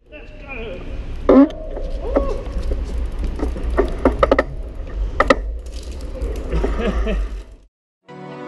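Bicycle being ridden, heard from a handlebar-mounted camera: a steady low rumble from the ride with several sharp clicks and rattles from the bike, and a few short bursts of voice from the riders. It cuts off suddenly near the end.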